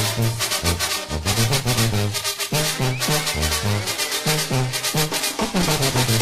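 Brass band music with drums: trumpets and trombones over a bouncing line of short low bass notes and a steady beat.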